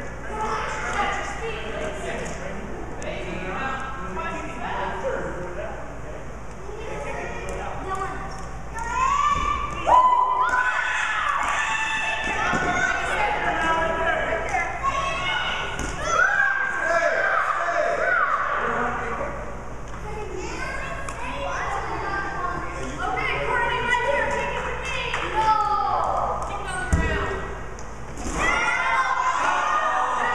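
Children's and adults' voices shouting and calling out during a kickball game, echoing in a large gymnasium, with a few thuds of a rubber ball on the hard floor, the loudest near the end.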